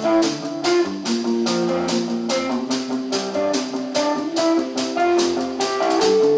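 Live rock band playing: distorted electric guitars and bass holding a riff over a steady drum beat.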